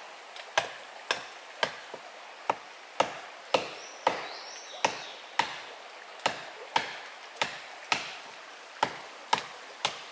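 Machete chopping wood with a steady run of sharp strikes, a little under two a second.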